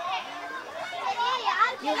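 Children's voices chattering in the background, quieter than the interview, with a woman's voice starting a question near the end.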